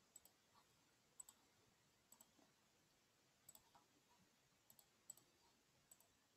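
Near silence with faint computer mouse clicks scattered through it, about one a second, several in quick pairs.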